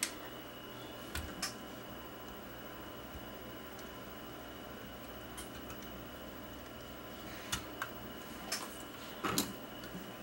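Scattered small clicks and taps of oscilloscope probe tips and hook clips being handled and fastened onto an 8mm VCR's test points: one at the start, two about a second in, and a cluster of several in the last three seconds, the loudest near the end. A steady faint hum with a thin high tone runs under them.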